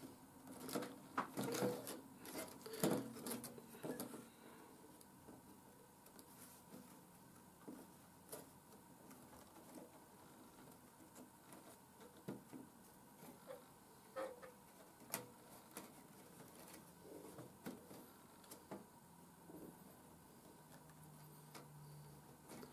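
Faint, scattered clicks and taps of thin laser-cut card pieces being handled and slotted together, busier in the first few seconds and sparse after.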